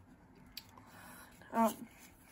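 Faint rustle of hands handling small paper packaging from a phone box, with one light click about half a second in.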